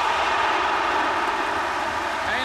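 Large football stadium crowd reacting loudly to a shot that goes just wide of the post: a dense, steady wall of many voices.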